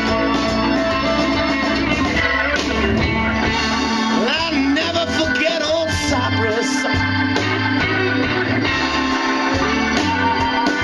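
Live blues band playing: a Hammond organ holding chords together with electric guitar.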